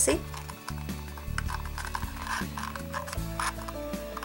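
Background pop music with steady held notes, over faint crinkles and taps of a paper cup being pressed and shaped by hand.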